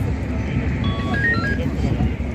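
Steady low outdoor street rumble with faint voices of people around, and a short stepping tune of high electronic beeps about a second in.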